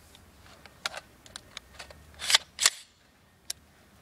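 Small metallic clicks and clacks of an Olympic Arms AR-15 in 7.62×39 being handled, with two louder clacks a little past halfway and a single click near the end.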